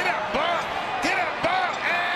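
A television play-by-play announcer's excited home-run call, shouted over stadium crowd noise.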